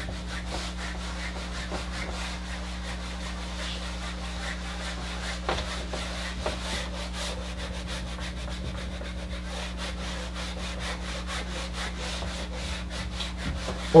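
An eraser rubbing across a whiteboard as it is wiped clean: rapid back-and-forth strokes throughout, with a few light knocks against the board.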